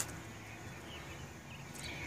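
Quiet outdoor background noise with no distinct sound event: a pause in the talk.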